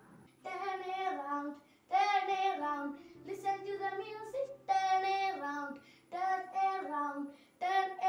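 A boy singing a song solo, in short phrases of held notes that step up and down, with brief pauses between phrases.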